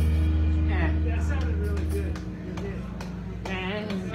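A live band's final chord ringing out, with its low bass note held and then stopped about two seconds in, while voices start talking over it.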